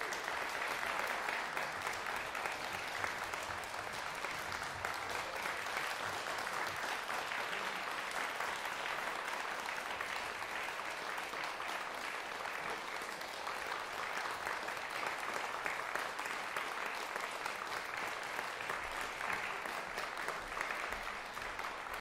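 Audience applauding in a concert hall, a steady, sustained round of clapping that holds at an even level throughout.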